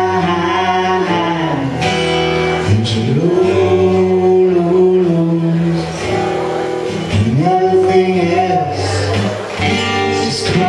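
Strummed acoustic guitar with singing in long, held notes that slide up into each new pitch.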